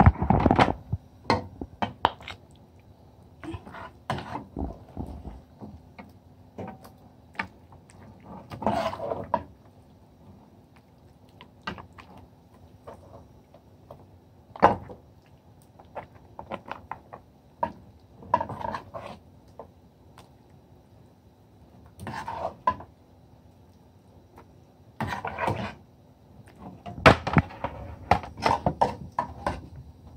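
A metal spoon knocking and scraping against a steel cooking pot as a thick meat curry is served out, with scattered clinks and knocks of dishes. A faint steady hum runs underneath.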